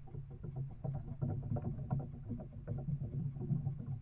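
Trail-camera recording of river otters on a wooden dock: a steady low hum under many small, irregular knocks and scuffs as the otters roll, rub and slide on the boards.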